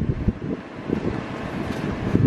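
Steady background noise of the room's air handling, with irregular low rumble on the camera's microphone.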